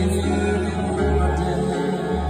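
Live pop band music with a male singer singing into a microphone, heavy bass notes underneath.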